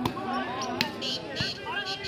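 Volleyball struck by hand during a rally: a few sharp smacks, one right at the start, another just under a second in and a third about halfway through, over background voices from the crowd.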